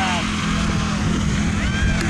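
Steady low hum over an outdoor rumble, with faint distant voices calling now and then.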